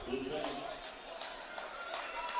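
Basketball gymnasium background: a few scattered thuds on the hardwood court and faint distant voices echoing in the hall.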